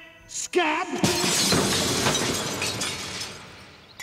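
Window glass smashing about a second in, the shards showering and tinkling down and fading over a couple of seconds, just after a man's short shout.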